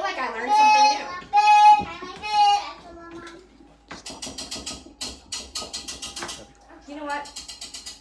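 A small child sings three high, held notes, then a fast run of sharp clicks and rattling follows for about three and a half seconds.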